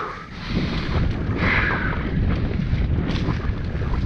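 Wind buffeting the camera microphone over the rumble and rattle of a mountain bike's tyres and frame descending a dirt singletrack at speed, with a brief louder hiss about a second and a half in.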